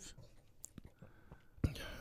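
Mostly quiet room tone with a few faint clicks, then a man starts speaking in a low voice near the end.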